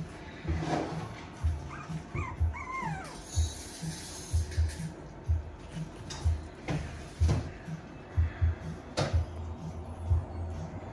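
Yorkshire terrier and Biewer puppies giving a few short high yips and whines about two seconds in, over a run of irregular low thumps.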